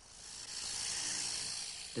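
A steady high hiss that swells in over about the first second and holds.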